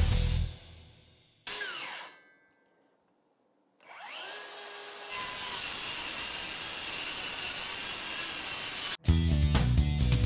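Cordless DeWalt DCS573 brushless circular saw. It is finishing a loud cut through a double stack of sheet goods and winds down within about a second. After a short silence it spins up with a rising whine and runs steadily. Near the end it bites into the stack again with a loud, low cutting sound.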